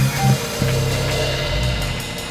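Live band music: a drum kit with cymbals over held low notes, dying away near the end.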